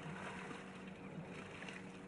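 Steady low hum under an even outdoor noise background, with a few faint scuffs and rustles.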